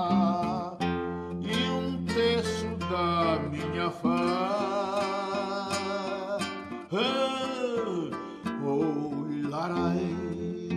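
A song with strummed acoustic guitar, a man's voice singing long, wavering held notes over it. One note bends up and falls back near the end.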